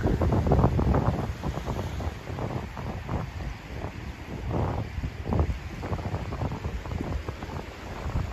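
Wind buffeting the microphone in uneven gusts, strongest in the first second, with the wash of surf on the beach beneath it.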